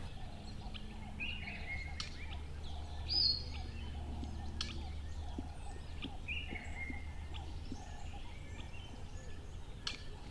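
Birds calling: scattered short whistled and falling notes, the loudest a high call about three seconds in, with a few sharp ticks over a low steady hum.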